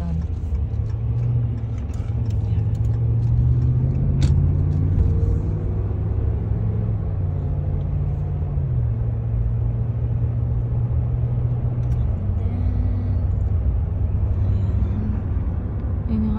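Car engine and road noise heard from inside the cabin as the car pulls away and drives. The engine note rises over the first few seconds as it accelerates, then settles and eases off slightly about halfway through. A single sharp click comes about four seconds in.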